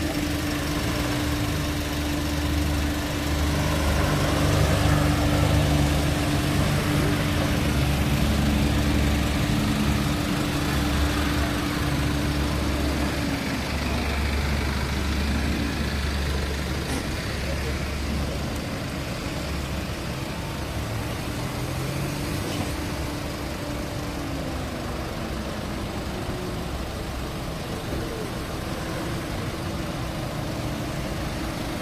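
Police SUV and car engines running at low speed as the vehicles move off along the road, a steady low rumble with a held engine hum that drops in pitch about halfway through.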